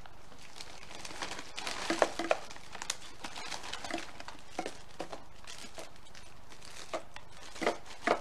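Plastic wrapper of a cookie package crinkling in the hands as it is opened, in irregular bursts with a few sharper crackles.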